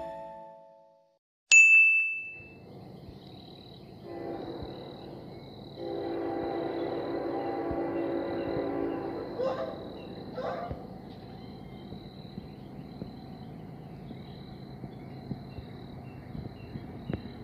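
A single bright chime rings once, about a second and a half in, and dies away within a second. It is followed by faint outdoor ambience with a thin, steady, high insect drone, and a low steady hum that swells for a few seconds in the middle.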